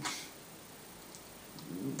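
A man's short breathy exhale at the very start, fading quickly, then faint steady room hiss.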